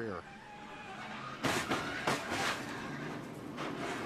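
NASCAR Cup stock car running at speed, heard through its in-car camera, then a sudden loud impact about one and a half seconds in as the car is hit in the left rear, followed by a loud noisy rush with repeated knocks.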